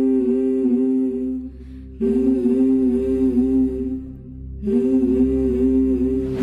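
Soundtrack music: a voice humming a slow, wavering melody in three long phrases over a low sustained bass.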